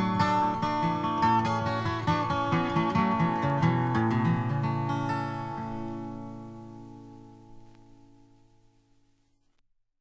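Closing instrumental bars of a folk song: strummed acoustic guitar playing for about five seconds, then a last chord that rings out and fades away to nothing.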